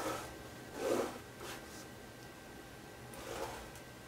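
Scoring stylus drawn through cardstock along the grooves of a Martha Stewart craft scoring board: a few short, faint scrapes, the clearest about a second in.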